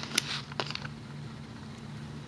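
A few light clicks and taps of fingers and rubber bands against the plastic pegs of a Rainbow Loom in the first moments, then only a steady low hum.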